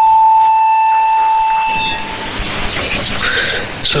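A long steady beep from a shortwave broadcast, lasting about two seconds, over a bed of radio static. The hiss and noise of the shortwave signal run on after the beep stops.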